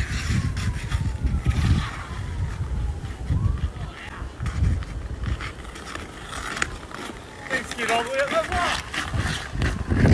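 Wind buffeting the microphone in gusts, heaviest at the start and the end, with the scrape of ice-skate blades on an iced-over road.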